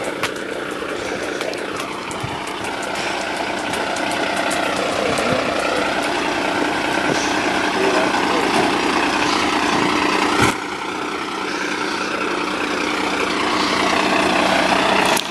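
A large engine idling steadily, growing louder as it is approached, with voices in the background.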